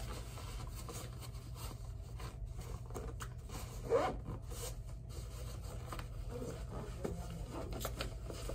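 Zipper on a headphone carrying case being pulled around the case, with the case and headphones rubbing and being handled. One short, louder zip stroke comes about four seconds in.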